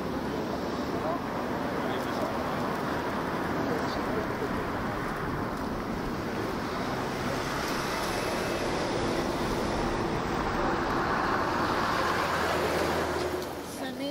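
Road traffic passing steadily, a continuous rush of tyres and engines that grows a little louder near the end and then falls away.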